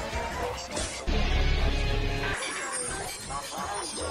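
Dense collage of overlapping, heavily processed logo-jingle music and sound effects. A loud deep rumble starts about a second in and stops abruptly after a little over a second; the rest is a thinner, echoing layer.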